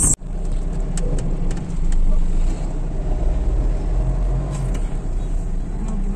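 Steady low rumble of a car driving, heard from inside the cabin, with a few light clicks about a second in.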